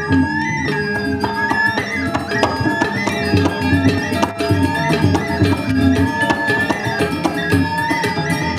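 Balinese gamelan ensemble playing dance accompaniment: interlocking struck metallophone notes and percussion, with a wavering high melody line held above them.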